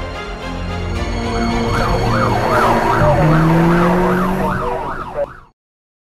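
Emergency vehicle siren in a fast yelp, its pitch sweeping up and down about three times a second. It sets in about a second in over background music and cuts off abruptly near the end.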